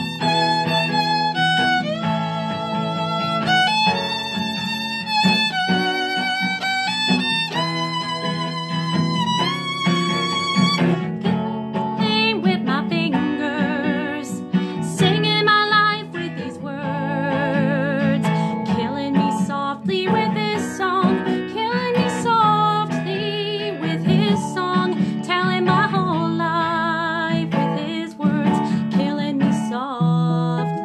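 Violin playing a slow melody: long bowed notes stepping upward, then from about eleven seconds in the instrument is held guitar-style and plucked in short notes. A steady low accompaniment runs underneath.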